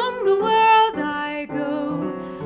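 A woman singing a melody in a few held notes, changing pitch about every half second, over a piano accompaniment.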